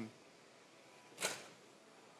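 Near silence: faint room tone, broken by one short breathy burst of noise about a second and a quarter in.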